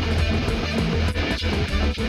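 Homemade GarageBand track: an Epiphone electric guitar recorded through an iRig HD interface, played over a heavy, steady bass line, the rhythm turning choppy with short breaks about a second in.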